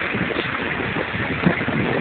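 Ambience aboard a gondola on open water: a steady rushing haze of wind on the microphone and water, with a few soft low knocks, the clearest about one and a half seconds in.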